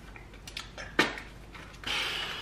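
A few light clicks and crinkles from a plastic food package handled in the hands, the sharpest about a second in, with a louder rustle starting near the end.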